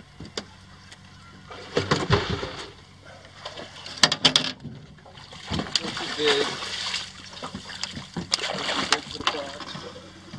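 Water splashing and sloshing beside a boat as a hooked redfish thrashes at the surface and is netted, with a few sharp knocks about four seconds in.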